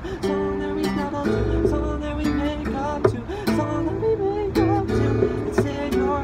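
Acoustic guitar strummed and picked in a steady rhythm, with a man singing along.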